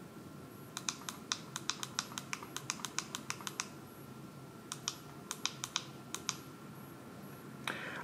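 Push buttons on an Acrel ADW300 energy meter's keypad clicking under a finger. A quick run of about twenty presses comes first, then a pause of about a second, then a shorter run of presses.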